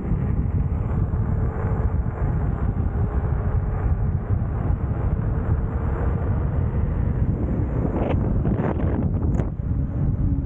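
Heavy wind buffeting the camera microphone, a steady low rumble as when moving at speed outdoors, with a few brief knocks or rattles about eight to nine seconds in.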